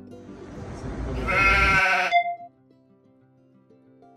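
One loud sheep bleat lasting about a second and a half, peaking around the middle of it, over quiet background music.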